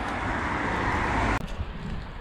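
Steady road-traffic noise, like a car passing close by, that stops abruptly about a second and a half in.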